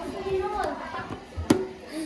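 A single sharp plastic click about one and a half seconds in as a plastic feeding tub's lid is shut, after a brief bit of voice.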